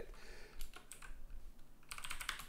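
Typing on a computer keyboard: a short run of light keystrokes, coming faster near the end, as a new name is typed in.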